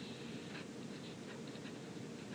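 Faint scratching of a pen writing on paper, a few short strokes as a dash and the start of a word are written.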